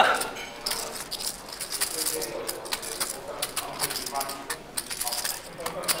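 Clay poker chips clicking and clattering against each other as they are handled at the table, a quick irregular run of sharp clicks, with faint talk in the background.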